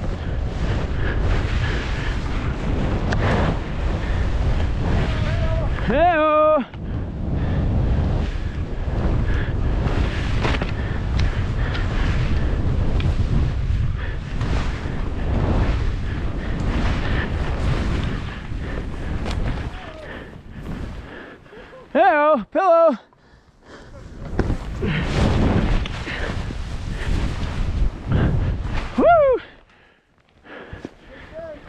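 Skis carving through deep powder snow, with wind rushing over the camera microphone and snow spraying against it. It goes quieter for a few seconds about two-thirds through. Short wordless whoops from the skier come about six seconds in, twice in quick succession later on, and once more near the end.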